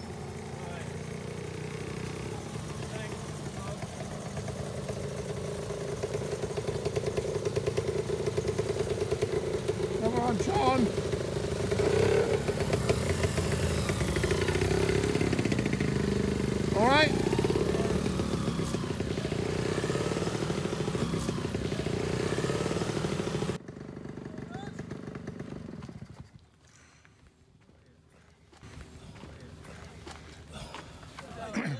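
Small-capacity moped and motorcycle engines, among them a Honda 90 step-through's four-stroke single, running as the bikes ride past one after another. The sound grows louder towards the middle, with a couple of brief revs, and cuts off suddenly about three-quarters of the way through, leaving quiet outdoor ambience.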